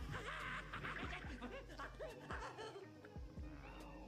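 Faint cartoon soundtrack: quiet music with short gliding notes and a few light ticks.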